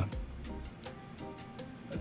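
Faint background music with a few soft ticks or clicks.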